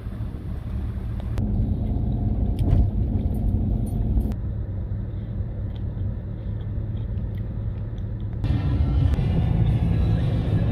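Low, steady road rumble of a car on the move, heard from inside the cabin, in short clips that change abruptly about a second and a half in, near the middle, and shortly before the end.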